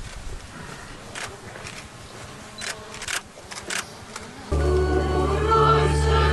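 Faint outdoor ambience with a few soft clicks and rustles, then about four and a half seconds in a choir's singing cuts in abruptly and becomes the loudest sound.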